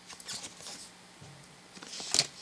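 Topps Pokémon trading cards being handled: light, scratchy rustles of card stock sliding against card stock, a few short ones in the first second and more near the end.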